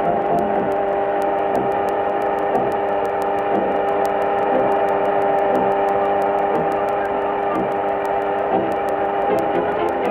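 Electric wall fan whirring: a steady, buzzing hum made of several fixed tones, held unchanged throughout.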